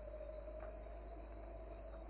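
Faint soundtrack ambience: a steady held tone that drifts slightly upward in pitch, over a low constant hum, with a faint short high chirp now and then.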